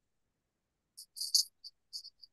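After about a second of silence, a run of short, high-pitched chirps in quick, irregular succession.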